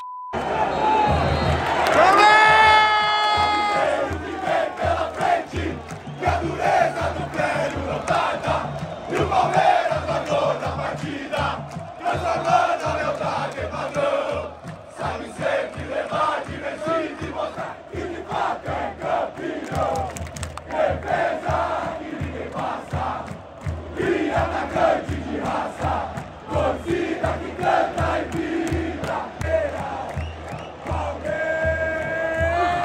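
Large football crowd of Palmeiras supporters chanting and singing together in the stands, with evenly repeated drum beats underneath. A single loud voice rises and is held for about two seconds, a couple of seconds in.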